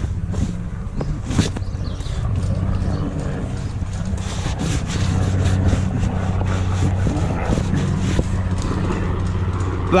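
A towel being rubbed and wiped over the fabric tube of an inflatable boat, with short scuffs and knocks. Underneath runs a steady low engine hum that gets louder about halfway through.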